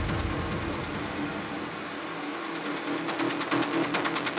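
Industrial techno in a breakdown: the deep kick and bass fade out, leaving a gritty, noisy texture over a held mid tone. Rapid hi-hat-like ticks thicken toward the end as the track builds.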